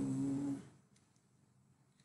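A man's voice holding a drawn-out, steady filler sound ("so…") for about half a second, then near silence.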